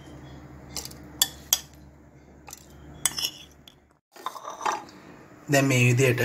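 Kitchen utensils clinking against dishes: about eight sharp, separate clinks over a low steady hum. The hum cuts off about four seconds in.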